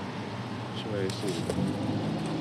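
A steady low background hum from outdoor traffic or machinery, with a brief faint voice about a second in.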